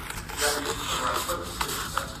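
Faint, indistinct speech in a small meeting room, with two sharp clicks near the end.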